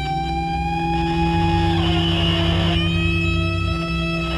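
Improvised guitar duet playing long held notes over a steady low drone; one upper note slides down about halfway through, and new higher notes come in near the end.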